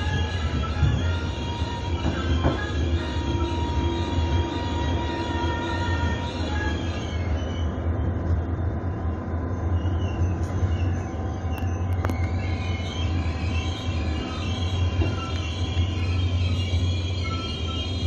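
Passenger train rolling slowly through a station, with a steady low drone and thin wheel squeal from the rails. A single sharp knock comes about twelve seconds in.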